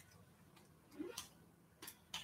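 Near silence: room tone with a few faint clicks about a second in and again near the end, from a man sipping water from a cup and lowering it.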